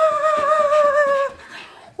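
A woman's voice holding one long high note, wavering slightly and sliding gently down, then breaking off about a second in.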